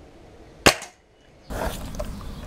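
Anschütz Hakim air rifle firing a single shot about two-thirds of a second in: one sharp crack with a short fading tail. From about a second and a half in, a louder steady outdoor background noise takes over.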